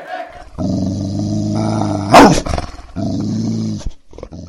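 Deep dog growl sound effect in two stretches, each lasting about a second, matched to an animated bulldog mascot. A loud, quick falling swoosh about two seconds in.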